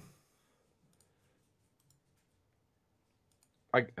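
A few faint, scattered computer mouse clicks with near silence between them, as Skype menus are clicked through; a man starts speaking near the end.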